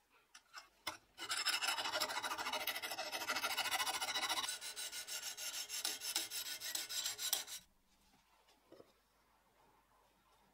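Sharpening stone on a guided-rod sharpener drawn rapidly back and forth across a steel cleaver's edge: a fast, even run of scraping strokes lasting about six seconds, a little softer in the second half. A few light clicks come before it.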